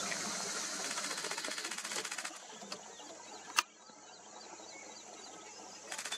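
Steady outdoor background drone with a fine, rapid pulsing for the first two seconds or so, then quieter. One sharp click stands out about three and a half seconds in.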